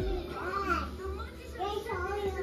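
A toddler's wordless vocalizing: two drawn-out sounds that rise and fall in pitch.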